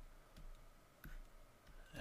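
Near silence with a few faint, short clicks of a stylus on a pen tablet as a word is handwritten, the clearest about a second in.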